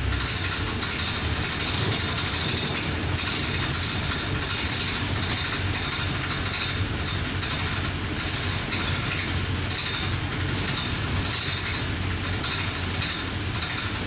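Inside the upper deck of a Wright Eclipse Gemini 3 double-decker bus on the move: steady engine and road noise with frequent rattles from the body and fittings.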